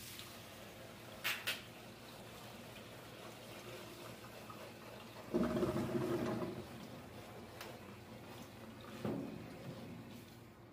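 Water splashing and sloshing in a stainless steel grooming tub as shampoo lather is worked up in a plastic basket. Two sharp knocks come a little over a second in, and a louder stretch of splashing lasting over a second comes about halfway through.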